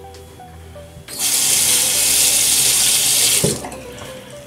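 Water running from a tap into a sink for about two seconds, starting about a second in and cutting off sharply near the end.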